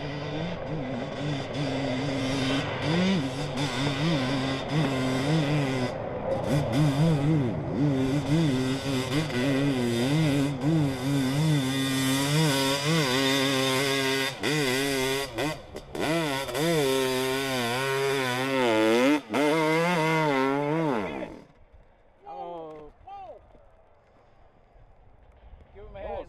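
Hillclimb dirt bike's engine revving hard on a steep climb, its pitch rising and falling constantly with the throttle, then winding down and cutting off about 21 seconds in.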